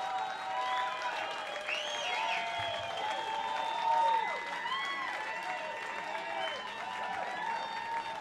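Crowd applauding and cheering, with many overlapping whoops and shouts rising and falling over the clapping, a little louder about halfway through.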